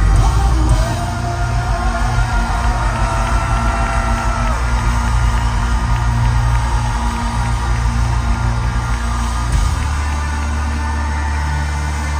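A live pop band plays a song with a lead singer on a handheld microphone, backed by keyboards, electric guitar and bass guitar, with a strong, steady bass line throughout.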